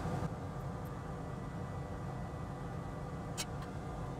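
Steady low background hum with a faint steady whine, and a couple of faint brief clicks about three and a half seconds in.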